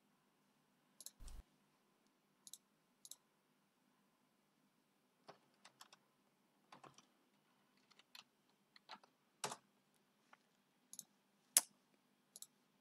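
Faint, scattered clicks of a computer mouse and keyboard, a dozen or so short single clicks at irregular intervals.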